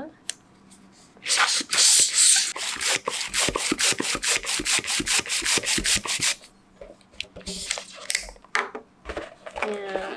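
Hand balloon pump worked in quick strokes, each stroke a rush of air, inflating a balloon; the pumping stops about six and a half seconds in, with one short burst more a little later.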